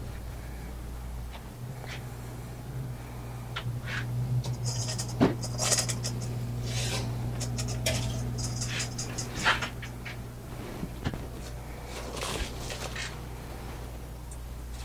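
Rummaging in a refrigerator: scattered clinks and knocks of containers and bursts of crinkling plastic, with a steady low hum underneath.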